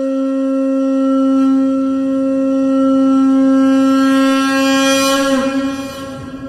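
Conch shell (shankha) blown in one long, steady note. The note grows brighter, then bends down in pitch and breaks off about five seconds in.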